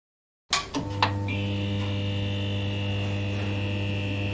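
Neon-sign buzz sound effect: it cuts in about half a second in with three sharp electrical crackles as the sign flickers on, then settles into a steady electric hum.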